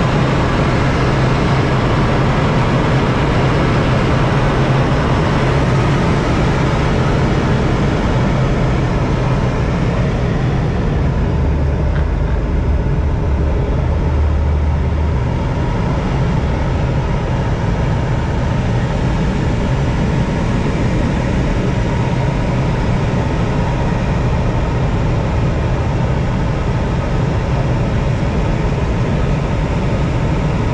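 Steady rush of air around a glider in flight, heard from inside the closed two-seat cockpit, with a low rumble that swells briefly about midway through.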